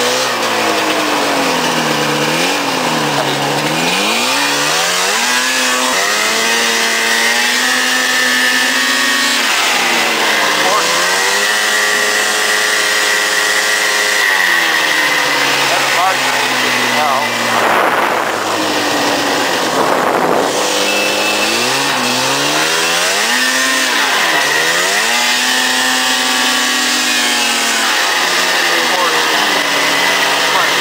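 Yamaha SRV 540 snowmobile's fan-cooled two-stroke engine under way, its pitch rising and falling again and again as the throttle is opened and eased off. A steady high whine runs alongside.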